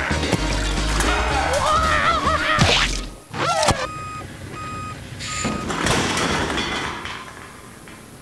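Music with a heavy bass line for the first three seconds. A box truck's reversing alarm then beeps three times, evenly spaced, followed by a short hiss of noise.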